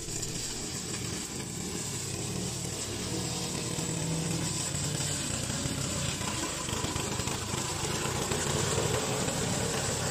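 Gasoline engine of a tracked remote-control lawn mower running steadily while it mows.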